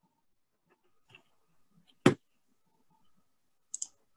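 Near-quiet pause over a video call, broken by one sharp knock about two seconds in and a quick pair of faint, high clicks near the end.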